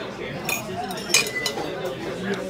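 Metal fork clinking against dishes: two sharp clinks about two thirds of a second apart, the second louder and ringing briefly.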